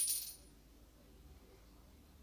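Small metal baitcasting-reel parts clinking briefly as they are handled, right at the start and dying away within half a second, then quiet room tone.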